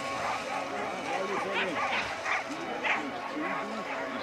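Sled dogs barking and yipping, several calls overlapping in quick succession, with people's voices mixed in.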